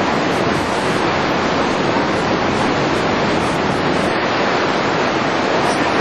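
Loud, steady rush of a large waterfall heard close up, from the foot of the falls in its spray.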